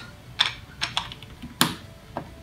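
Plastic LEGO bricks clacking against each other and a LEGO baseplate as they are slid and pushed together: a handful of sharp clicks, the loudest about one and a half seconds in.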